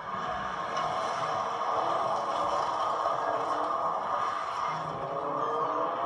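Rally car engine running hard on a gravel stage, heard over a dense rushing noise; its pitch climbs near the end as the car accelerates into view.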